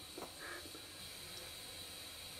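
Faint, steady hiss of a small canister-fed gas burner burning under a model steam boiler, lit and giving a blue flame.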